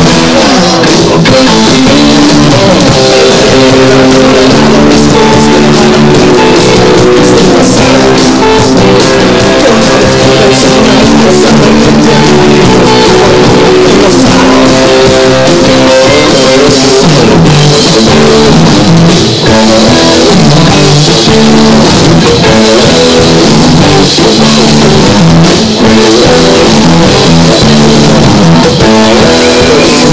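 Live rock band playing an instrumental passage on electric guitars, bass guitar and drum kit, loud throughout.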